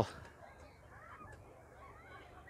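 Near silence: faint outdoor background with no distinct sound, just after a spoken word ends at the very start.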